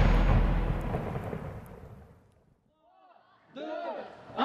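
The tail of a deep boom from a logo-intro sound effect, dying away over about two seconds into silence. A voice starts near the end.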